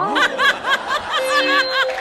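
High-pitched laughter in a rapid run of short giggles, about six a second, with a steady held musical tone joining under it in the second half.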